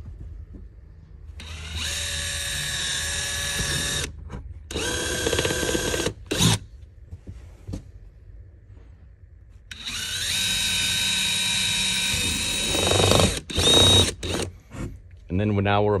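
Cordless drill with a small bit running in several separate runs, each a steady whine, the longest starting about ten seconds in, as it bores through the van's headliner material to leave a witness mark on the steel roof beam behind it. A few short bursts follow near the end.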